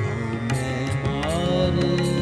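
Sikh shabad kirtan music: sustained harmonium chords over a steady tabla beat, with a rising melodic glide about a second in.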